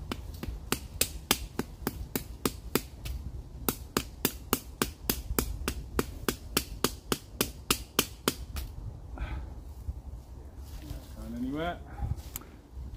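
A peg being hammered into the forest floor with the back of a saw: a steady run of sharp knocks, about three a second, that stops after some eight or nine seconds.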